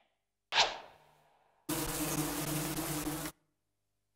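Cartoon bee-wing buzzing sound effect, steady for about a second and a half, starting and cutting off abruptly. About half a second in, a short sound falls in pitch and fades before it.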